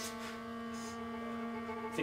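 A steady hum with several higher overtones layered above it, holding one pitch throughout.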